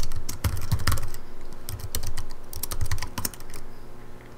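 Typing on a computer keyboard: a quick run of keystrokes that thins out into a few separate taps, ending with the Enter key that runs the command.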